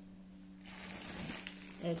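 Faint rustling of a plastic bag being handled, starting about half a second in, over a steady low hum.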